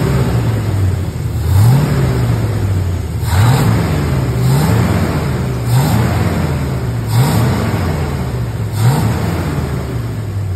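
Carbureted V8 fed by a Holley 4160 four-barrel carburetor, warmed up to operating temperature with the choke open, idling while the throttle linkage is blipped by hand. About six short revs, each a quick rise in pitch that drops back to idle, come roughly every one and a half seconds.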